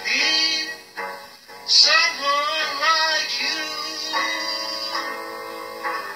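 A song: a singer's voice over instrumental accompaniment, the held notes sung with a wavering vibrato.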